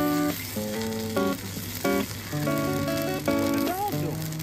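Lofi background music with plucked notes, over the sizzle of chila batter frying in a non-stick pan.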